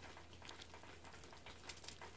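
Faint, scattered crunching and crackling of snow being packed by hand, with a quick cluster of louder crunches near the end.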